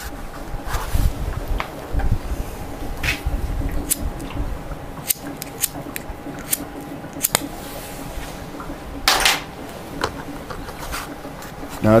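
Scattered sharp clicks and knocks, a second or so apart, over a faint steady hum, while a hydrogen (HHO) torch fed by a running 12 V electrolyser is being lit. A short louder rush comes about three quarters of the way through.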